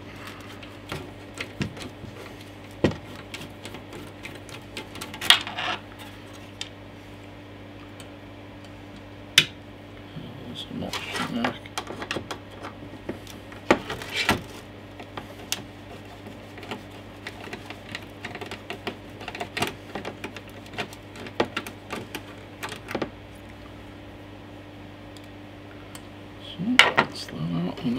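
Screwdriver backing small screws out of the metal shield on an Amiga 500 Plus motherboard: scattered light clicks and metal taps, irregular and a second or more apart, over a steady low hum.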